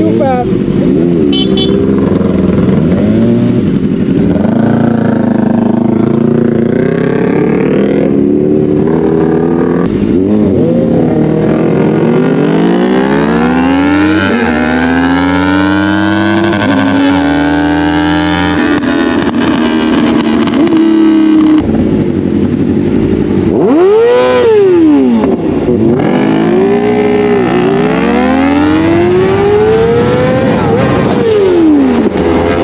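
Tuned Kawasaki Ninja ZX-4RR's small inline-four engine under way, pitch climbing in long rising sweeps as it revs out and dropping back again and again as it shifts and rolls off the throttle. The engine note stays loud throughout.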